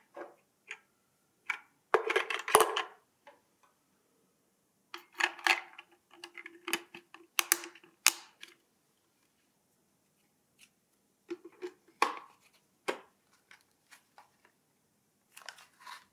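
Hands fitting a battery into the white plastic base of an IKEA SOLVINDEN solar LED lamp and pressing its battery cover into place: scattered plastic clicks, taps and rustles in several short clusters with quiet gaps between.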